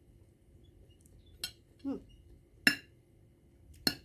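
A fork clinking against a plate of noodles three times, sharp short clicks, the second the loudest.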